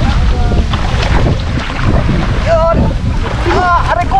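Wind rumbling on the microphone over water sloshing and splashing around a person wading and groping by hand in muddy river water. A voice calls out briefly twice in the second half.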